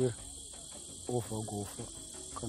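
Steady, high-pitched chirring of insects in the bush, unbroken throughout. A man's voice speaks a few quieter words about a second in.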